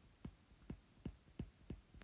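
About six faint, short taps, a third of a second or so apart: a stylus tapping on a tablet's glass screen while handwriting a word.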